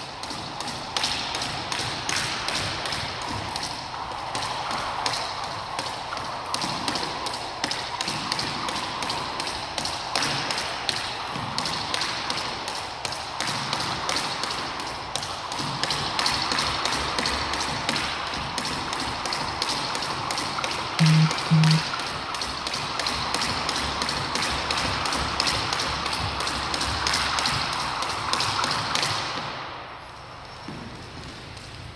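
Jump rope striking a hardwood floor with each turn as a person skips, a fast, even run of ticks that stops just before the end. Two short low beeps sound about two-thirds of the way through.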